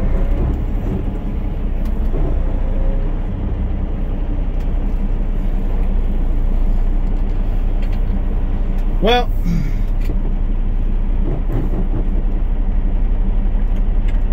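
Semi truck's diesel engine idling steadily, heard from inside the cab, with a brief voice sound about nine seconds in.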